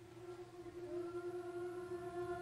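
Middle school choir singing a cappella, holding a long opening note that swells, with a higher note sliding in about a second in.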